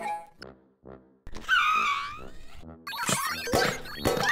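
Cartoon background music with a short sound effect that warbles and swoops in pitch for about a second and a half in the middle.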